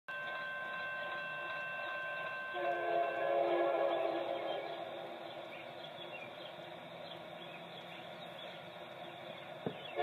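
Locomotive air horn on an approaching BNSF coal train sounding for a grade crossing: a chord blast that starts suddenly about two and a half seconds in and fades over the next couple of seconds, heard over a low-fidelity webcam feed. A faint steady tone comes before it, and a short click near the end.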